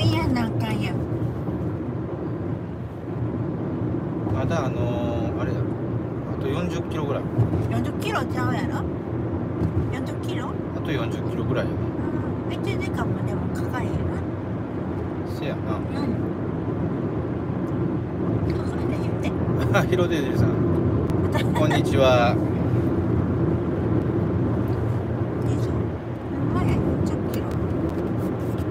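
Steady road and engine rumble inside a moving minivan's cabin. Short snatches of a voice come and go over it.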